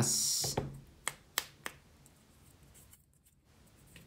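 A sanding stick rubbing on a small balsa-wood nose block: a short scratchy sanding stroke at the very start that quickly dies away. Three light clicks follow about a second in, then quiet.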